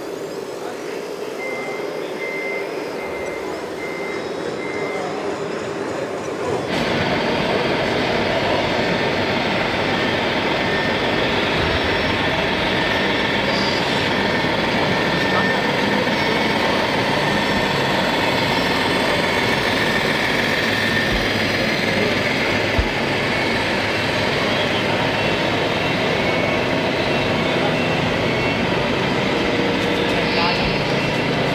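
A reversing alarm from a radio-controlled construction model's sound module beeps five times at one pitch, evenly spaced. About seven seconds in, a sudden cut brings a louder, steady din of voices and hall noise that lasts to the end.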